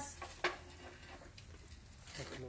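Light kitchen handling at a wood-fired comal: one sharp knock about half a second in, then a few faint clicks, over a low steady hum.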